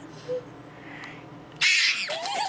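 A girl's stifled giggling behind her hand: a faint squeak of a giggle early, then a loud breathy burst of laughter near the end.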